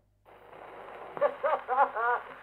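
Expert Junior horn gramophone with a thorn needle starting to play a 1903 Columbia disc: after a brief silence the record's surface hiss comes in, and about a second in a man's recorded voice begins speaking through the horn, with the thin, narrow sound of an early acoustic recording.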